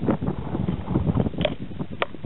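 Hands handling a large Stihl chainsaw's top cover and body: an irregular run of light clicks and knocks, with a sharper click about one and a half seconds in and another at the end. Wind buffets the microphone throughout.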